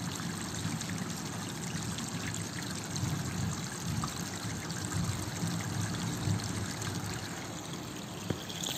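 Steady background hiss like trickling water.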